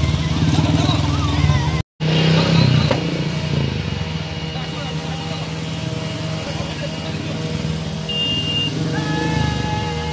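Motorcycle engines running at low speed as several bikes move along together at walking pace, with crowd voices over them. The sound cuts out completely for a moment about two seconds in.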